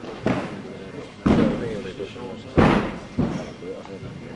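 A heavy medicine ball thudding against a gym floor and being caught and thrown: four impacts, the two loudest a little over a second apart, each with some echo.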